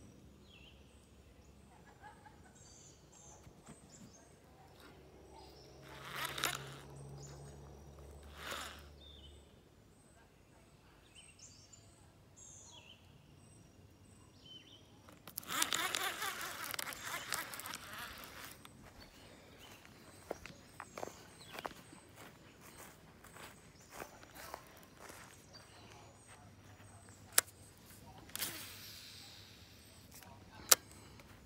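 Quiet outdoor background beside a pond, broken by a few seconds of rustling handling noise about halfway through as a baitcasting reel is handled close to the microphone, and a couple of sharp clicks near the end.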